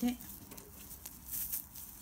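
Faint rustling of flat tape yarn as a crochet hook draws a loop through the stitches to make a slip stitch, strongest a little past the middle.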